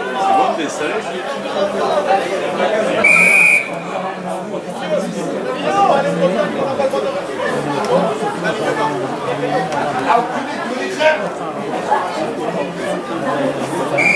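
A referee's whistle gives one short, steady blast about three seconds in, over a constant babble of many spectators talking at once.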